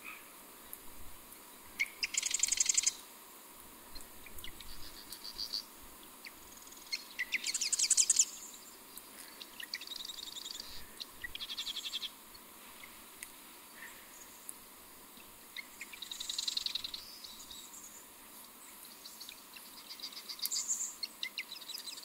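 A songbird singing short, rapid rattling trills, about six to eight phrases spaced a few seconds apart, over a faint steady hiss.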